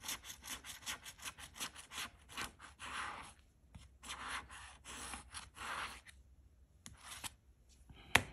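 Metal bottle opener scraping the coating off a scratch-off lottery ticket in rapid back-and-forth strokes, several a second. The scratching stops about six seconds in, with a few last strokes shortly before the end.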